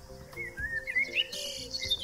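Recorded birdsong from a nature-sounds track: a run of short, gliding chirps that starts about half a second in and climbs higher in pitch.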